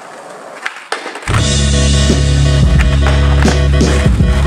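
Skateboard wheels rolling on pavement, with a couple of sharp clacks of the board. About a second in, loud music with a heavy steady bass starts abruptly and covers the rest.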